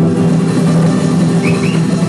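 Acoustic guitar chord ringing out after a strum, held as one of the closing chords of a live song. Two short rising chirps come about a second and a half in.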